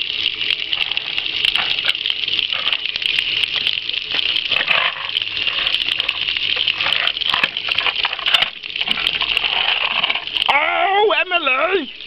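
Water spraying down steadily onto toy cars and wet paving, with scattered small clicks of plastic toys being handled. Near the end, a high, wavering voice takes over.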